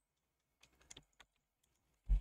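A few faint taps of computer keyboard keys in the middle of an otherwise near-silent stretch.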